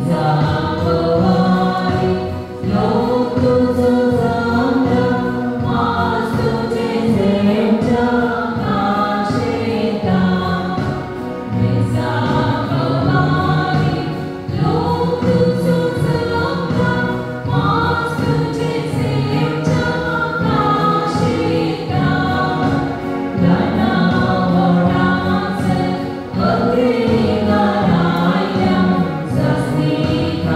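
Church choir singing a hymn during Communion, in long phrases with brief pauses between them.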